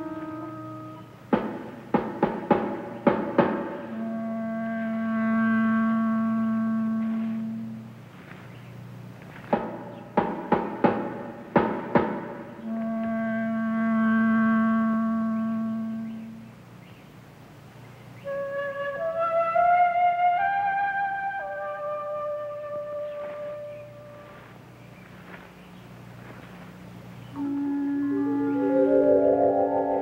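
Suspense film-score music. Twice, a quick run of struck notes gives way to a low held tone with higher held notes above it. Later a phrase of rising notes plays, and a swelling chord builds near the end, over a steady low hum.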